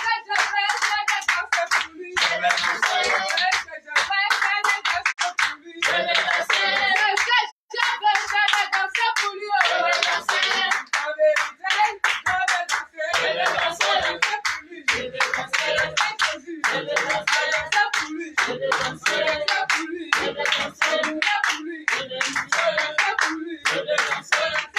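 A congregation claps their hands in a steady rhythm while singing together in a small room. The sound cuts out for an instant about seven and a half seconds in.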